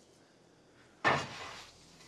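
A door bangs shut once, sharply, about a second in, after a near-silent start. A faint low hum lingers after it.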